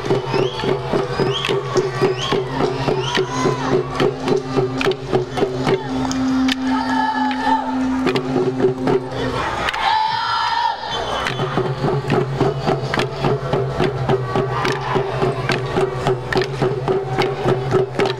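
Marshallese dance troupe chanting in unison on long held notes over a fast, even beat of hand drums. The drumming and the low held notes break off briefly about ten seconds in, then resume.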